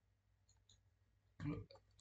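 Near silence with two faint, short clicks about half a second in, then a brief snatch of a man's voice near the end.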